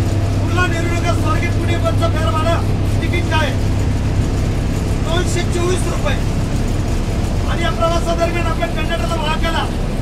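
Steady low drone of a bus engine heard from inside the passenger cabin, under a man's loud voice speaking in stretches.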